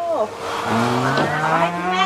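A long, drawn-out 'oh-hoh' of amazement (Thai 'โอ้โห', 'wow') in a low adult voice, rising slowly in pitch for nearly two seconds, with a breathy hiss under its first half.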